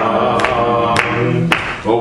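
Gospel hymn sung by a group of voices, with sharp claps keeping the beat about twice a second; the singing dips briefly for a breath near the end, then comes back in.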